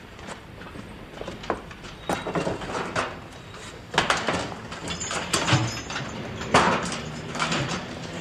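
A series of irregular knocks and clatters, with the loudest about four seconds in and again about six and a half seconds in, like household junk being moved about and set down.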